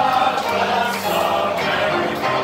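A roomful of people singing together in chorus over a held keyboard accompaniment.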